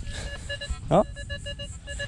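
Nokta Makro Legend metal detector giving a fast run of short, clear beeps, about six a second, as the coil sweeps over a buried target. It is a mid-conductive signal reading 23 to 24 on the target ID, typical of a pull tab.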